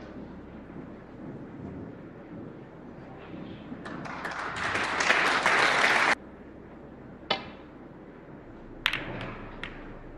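Audience applause swelling for about two seconds and cutting off abruptly. Then a single sharp click of a cue tip striking the cue ball, and about a second and a half later several sharp clicks of snooker balls colliding.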